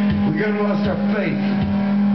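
Live one-man-band blues-punk playing: a steady loud guitar drone with low drum thumps and sliding, wailing notes bending up and down.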